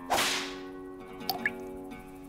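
A swish sound effect at the start, fading over about half a second. A little over a second in comes a short click and a small rising blip, like a single drop falling from the melting popsicle. Steady held background music tones run under both.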